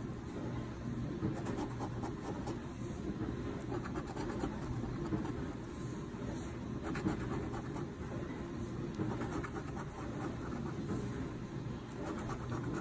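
A coin scratching the coating off a scratch-off lottery ticket, in several short bursts of rasping strokes with pauses between, over a steady low background hum.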